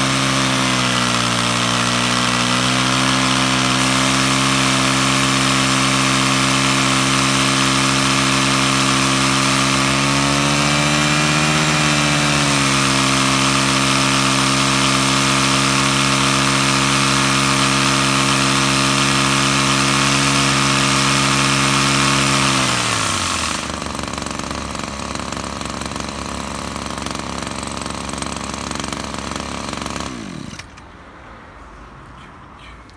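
Maruyama MS053D-20 backpack power sprayer's small two-stroke engine running steadily while the wand sprays mist; the engine speed dips briefly near the start and rises for a couple of seconds about a third of the way in. About three quarters of the way through the engine stops, its pitch falling away, and a quieter steady hiss remains.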